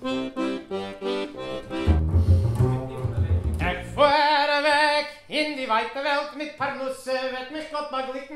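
Piano accordion played close up in a run of short detached chords, with deep bass notes joining about two seconds in. About halfway through it cuts off and a man sings with a wavering vibrato.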